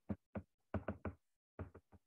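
Stylus tip tapping and knocking on an iPad's glass screen during handwriting: a quick, uneven run of sharp taps, about eight in two seconds, with a short pause a little past the middle.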